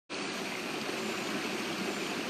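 Shallow rocky stream running over stones and a small cascade: a steady rushing of water.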